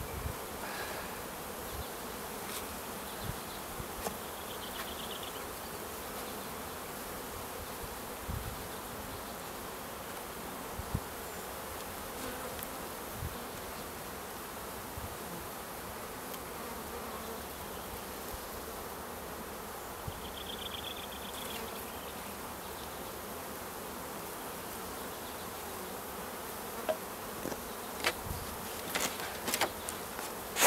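Honeybees buzzing around an opened hive, a steady hum. A few sharp knocks of wooden hive parts being handled come near the end.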